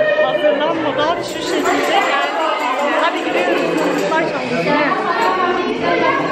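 Crowd chatter: many voices talking over one another in a large hall.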